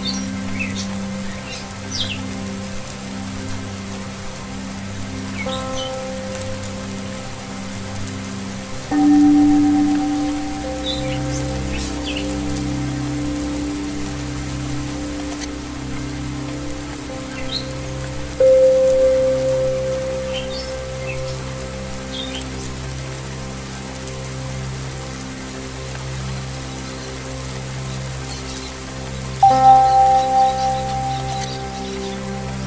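Steady rain over ambient singing-bowl music: sustained, slowly pulsing tones, with a loud ringing note struck about 9 seconds in and another about 18 seconds in, each fading slowly. Small birds chirp briefly now and then.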